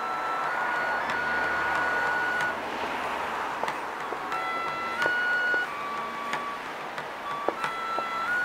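Shinto kagura music: a bamboo flute plays a slow line of long held notes, stepping between a few pitches. Sharp strikes, most likely from a drum, come at irregular intervals, more of them in the second half.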